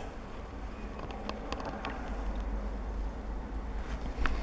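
Low, steady background rumble with a few faint light clicks.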